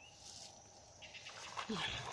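A woman making a short, low animal-like vocal noise near the end, after a moment of faint rustling.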